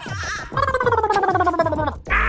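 A comic sound effect: a wobbling tone that glides down in pitch from about half a second in to near the end. It plays over background music with a steady thumping beat, about four beats a second.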